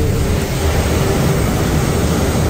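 Steady, loud noise of a truck driving through a long road tunnel: its engine and tyres run together with the tunnel's ventilation fans, which sound like a helicopter rotor. The noise is doubled and a bit loud inside the tunnel.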